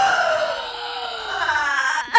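A woman's long, drawn-out vocal cry, sliding down in pitch and then rising again near the end.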